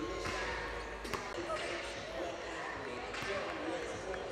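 Basketballs bouncing on a hardwood court, with a sharp bounce about a second in, over indistinct voices echoing in a large arena.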